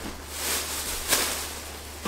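A clear plastic bag rustling and crinkling as it is handled, with a sharper crinkle about a second in.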